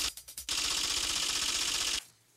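Television caption sound effect: a string of quick clicks, then a steady, fast mechanical rattle that cuts off suddenly at the end.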